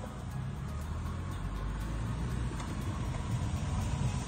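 Low steady rumble of a car's engine and road noise inside the cabin, heard over a phone's video-call microphone while the car sits in slow traffic.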